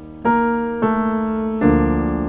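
Piano chords in B-flat major, struck three times in turn, each left to ring. The first is an E-flat major voicing and the last is a B-flat major chord over D.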